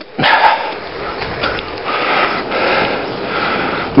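Steady rushing noise of riding a bicycle along a path, mostly wind and movement on a handheld phone's microphone, swelling and easing slightly.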